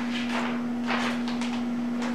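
Printed paper sheets rustling as they are shuffled and turned by hand, a few soft crinkles over a steady low hum.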